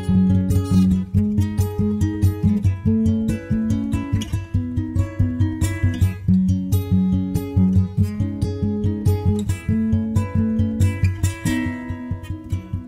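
Background music: acoustic guitar playing a steady, even run of plucked notes.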